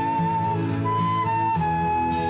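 Flute playing a slow melody in long held notes, stepping up briefly about a second in and back down, over strummed acoustic guitars and keyboard in a folk ballad's instrumental break.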